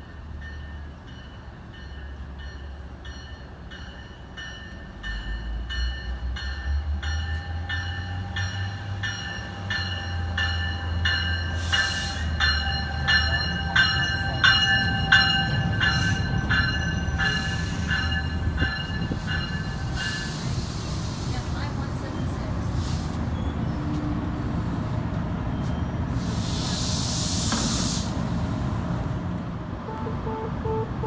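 NJ Transit multilevel push-pull train arriving with its ALP-45DP locomotive pushing at the rear. The bell rings about twice a second for roughly the first 20 seconds over a low rumble that builds as the train comes in. As it stops there are bursts of air hiss, one about two-thirds of the way in and a longer one near the end.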